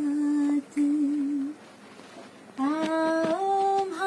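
A woman humming a Rajasthani folk melody unaccompanied, in long held notes. Her voice stops about one and a half seconds in, then comes back about a second later with a new phrase that steps up in pitch.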